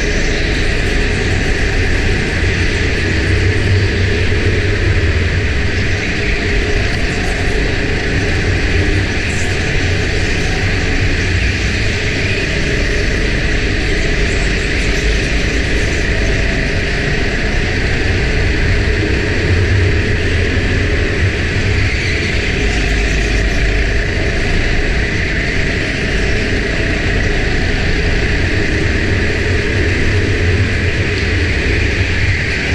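Go-kart engine running at speed, a low rumble heard through the onboard camera that swells and eases every few seconds as the kart accelerates and slows through the corners, over a steady hiss.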